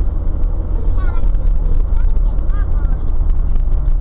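Steady low rumble of a vehicle's engine and road noise heard from inside the cab while driving, with a few brief high chirps about a second in and again two and a half seconds in.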